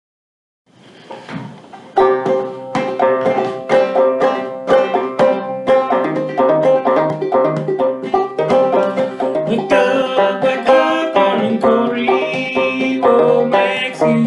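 Banjo played clawhammer style in Triple C tuning, an instrumental introduction in a steady, even rhythm of plucked notes. It starts softly and comes in at full strength about two seconds in.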